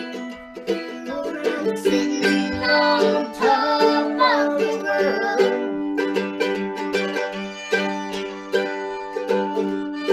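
Mandolin strumming a bluegrass rhythm under a woman's and a girl's singing. The singing stops about halfway through, and the mandolin carries on alone with evenly spaced strums.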